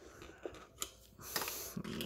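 A few small clicks and a brief scrape of a metal hand tool working a stripped wire around a light fixture's terminal screw, tensioning the wire loop.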